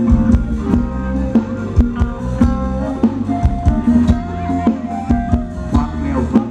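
Live band playing Thai ramwong dance music, with a steady drum beat under sustained melodic lines.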